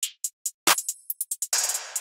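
Programmed trap drum pattern playing back from FL Studio: fast hi-hat rolls, a deep kick about two-thirds of a second in, and a snare-type hit with a reverb tail about halfway through.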